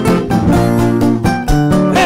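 Acoustic guitar playing a strummed chord accompaniment in a live band, with steady, even strokes.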